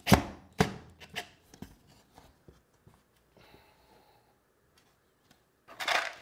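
Sharp knocks on the crosscut sled's wooden base, about two a second for the first two seconds, from work on screwing the sled's runner in place. Fainter taps follow, then a louder clatter near the end.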